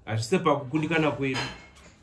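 A woman's voice speaking, the words not made out, fading out near the end.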